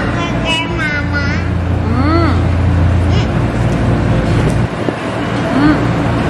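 A steady low mechanical hum, like an idling engine, runs under brief, scattered bits of voices.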